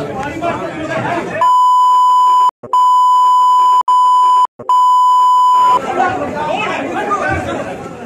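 A steady 1 kHz censor bleep, about four seconds long with three brief breaks, laid over men shouting at each other in a crowded room. The bleep masks the abuse being shouted in the quarrel.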